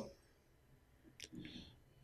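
Near silence in a pause between spoken phrases, with one faint click about a second in, followed by a brief faint rustle.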